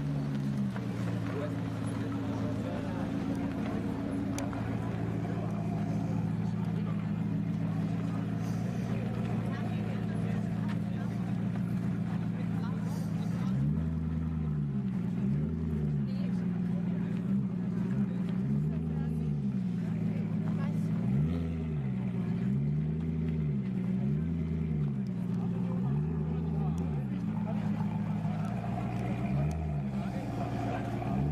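Alfa Romeo Disco Volante's 4.7-litre V8 idling steadily, then, from about halfway, blipped repeatedly: eight or nine short revs that each rise and fall in pitch. Crowd chatter underneath.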